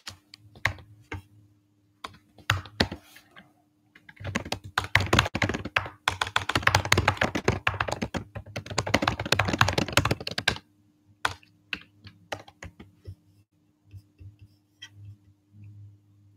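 Typing on a computer keyboard: a few scattered keystrokes, then a fast, continuous run of typing for about six seconds, then scattered key presses again. A faint steady hum sits underneath.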